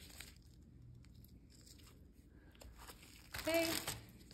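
Mostly quiet, with a few faint snips and soft rustles of small dissecting scissors cutting the connective tissue that holds a preserved fetal pig's skin to the leg muscle.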